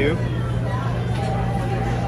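Restaurant background noise: a steady low hum with voices talking faintly over it.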